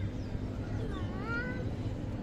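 Steady low outdoor background rumble, with a short, high, wavering cry about a second in.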